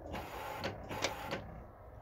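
Push-button stainless steel drinking fountain running, its water stream splashing into the steel basin for about a second and a half before it stops: the fountain is working.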